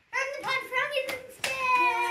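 A group of children's voices making drawn-out wordless sounds together, with one sharp clap about one and a half seconds in.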